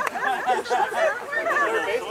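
People chatting, with a laugh at the start.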